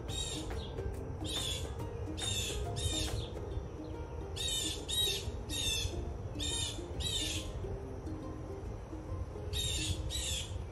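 A bird chirping over background music: short, high calls come again and again, often in pairs, with a pause of about two seconds near the end, over a quiet melody.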